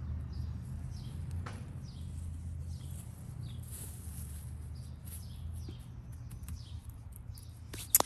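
Soft rustle of hands packing damp garden soil around a transplanted tomato seedling, over a low steady rumble, with faint short bird chirps repeating in the background. A sharp click comes near the end.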